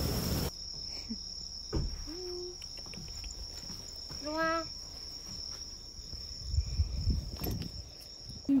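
An insect, cricket-like, singing one continuous steady high-pitched note in a grassy garden at night. A brief voice-like sound comes about halfway through, and a few soft low thumps come near the end.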